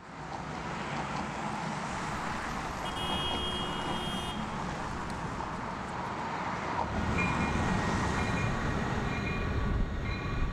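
Steady city traffic noise, a continuous rumble and hiss of passing vehicles that fades in at the start and grows heavier low down in the second half. A brief high squeal comes about three seconds in, and short high-pitched tones repeat over the last few seconds.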